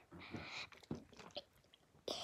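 Faint handling noise from a capped plastic bottle of water: soft rustling in the first half-second and a few small clicks about a second in.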